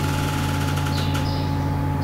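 A steady low hum made of several fixed tones, unchanging in pitch and level.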